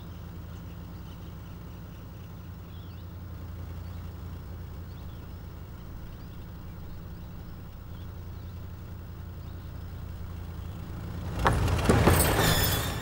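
A vehicle engine running with a steady low drone. Near the end comes a sudden loud crunch as a tyre rolls over a stone on the road.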